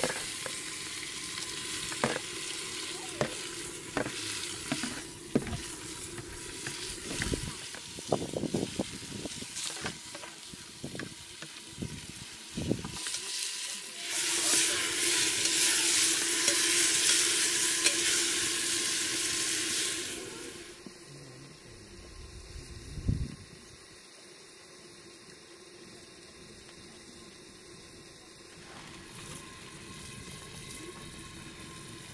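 Chopped tomatoes sizzling in a hot aluminium pressure-cooker pot, with a metal skimmer clicking and scraping against the bowl and pot as they are tipped in and stirred. The sizzle swells loud for several seconds in the middle, then dies down to a quiet fizz, with a single knock a few seconds before the end.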